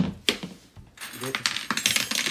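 Small metal hooks clinking against each other as they are picked up and handled: two sharp clicks, then from about a second in a run of rapid metallic jingling.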